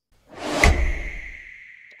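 Editing transition sound effect: a swelling whoosh that lands on a deep boom about half a second in, with a high ringing tone trailing away over the following second.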